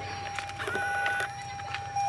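A car's electronic warning tone sounding steadily with the driver's door open, joined briefly by a second, higher tone about a second in, over a few light clicks.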